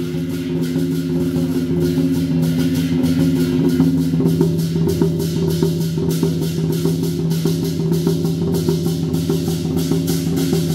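Lion-dance percussion: a large lion drum beaten together with crashing cymbals in a steady, driving rhythm, over a low sustained ringing.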